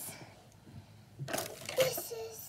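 Crinkly rustling of a white wipe being handled and rubbed over the face close to the microphone while makeup is wiped off. It comes in a burst over the second half.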